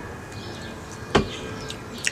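A single sharp knock about a second in, the sound of a beer can being set down on a hard surface.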